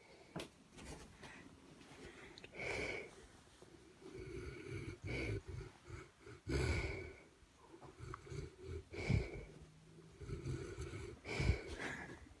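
A St. Bernard dog breathing noisily through its nose as it rests. Each breath has a low snore-like rumble and a thin whistle, and the breaths come irregularly, every one to two seconds.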